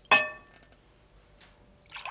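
Glassware clinks once with a short bright ring as the glass pitcher knocks against the drinking glass, then water is poured from the pitcher into the glass near the end.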